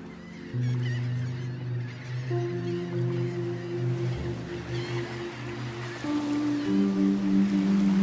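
Background music: sustained low notes that shift to new chords every second or two, with faint bird calls over them.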